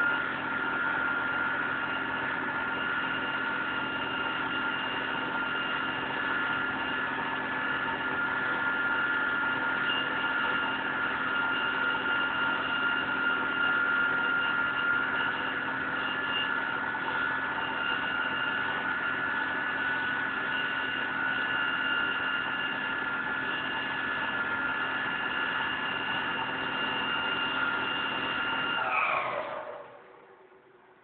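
Fire engine's engine and pump running at steady raised revs, giving a mechanical whine with several pitches held together. Just before the end the pitch falls and the sound dies away as the machine winds down.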